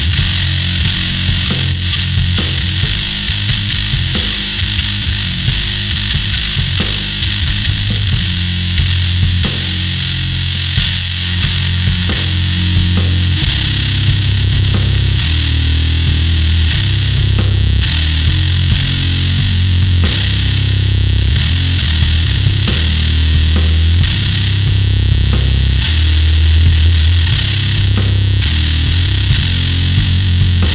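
Fender Precision bass played through a Magic Pedals Conan Fuzz Throne fuzz pedal into a Darkglass amp: a slow, heavy riff of long, held low notes buried in thick, buzzing fuzz.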